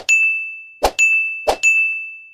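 Animation sound effects for pop-up on-screen buttons: three times a short pop followed by a bright single-note ding that rings and fades away, about two thirds of a second apart.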